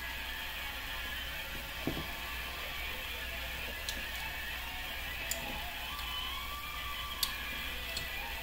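Quiet room tone with a steady low hum. About two seconds in there is a soft knock as the pint glass of beer is set down on the table, and a few faint clicks follow.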